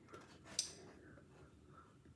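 Quiet room tone with a brief, faint rustle of paper booklet pages about half a second in.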